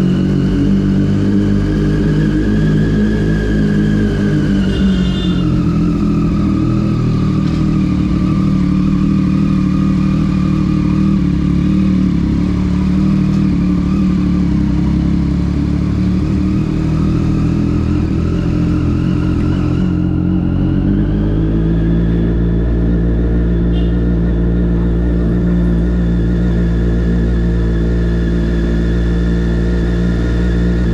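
Sport motorcycle engine running steadily at low road speed under the rider. Its pitch eases down about five seconds in and rises again about twenty seconds in.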